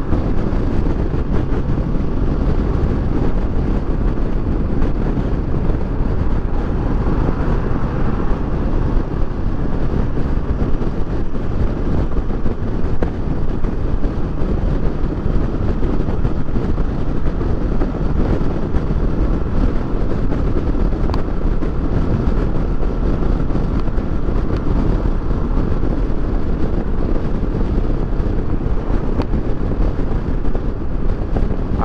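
Steady wind rush on the microphone over the hum of a Kawasaki Versys 650 parallel-twin motorcycle cruising at constant highway speed.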